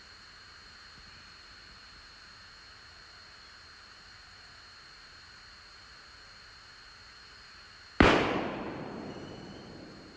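A single loud bang about eight seconds in, fading out over about two seconds. Before it there is only a faint steady hiss with a thin high whine.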